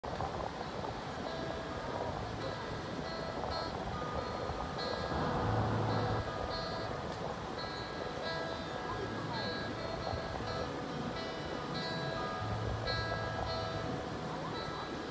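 Little Martin acoustic-electric guitar amplified through a PA speaker, playing a picked instrumental intro: ringing notes in a repeating pattern, with a few low bass notes held for about a second each.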